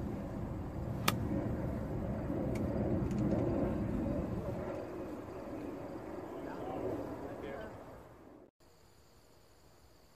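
Golf club striking the ball on a full fairway swing: one sharp click about a second in, over a low rumble of wind on the microphone. Near the end the sound drops away to a quiet background with faint steady insect chirring.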